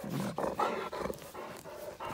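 A dog panting and snuffling close up while being petted, in short irregular breathy bursts that are loudest in the first second.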